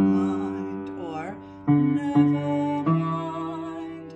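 Upright piano playing a low bass line, four notes struck one after another, each ringing and fading, with a voice singing along on the notes. It is the bass part of a choir piece being demonstrated where it splits between staying on the low G and the D.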